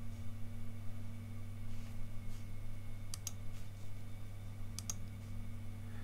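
Two pairs of sharp computer mouse clicks, about three and about five seconds in, over a steady low hum.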